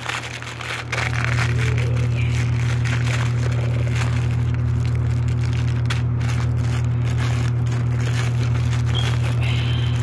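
A plastic packaging bag crinkling and rustling in the hands as it is pulled open. Under it a loud, steady low hum comes on about a second in and holds.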